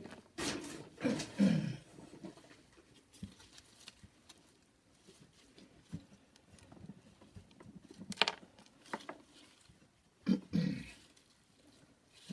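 Compost being scooped and tipped into a plastic plant pot, with quiet rustling, soft clicks and one sharp tap about two-thirds through. A short wordless vocal sound from the person potting comes near the start and again near the end.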